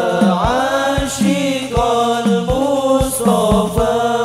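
Male vocal group singing an Islamic sholawat in unison with long, sliding notes, accompanied by rebana frame drums beating a steady rhythm of low strokes several times a second.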